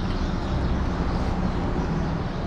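Steady low background rumble, with no distinct events.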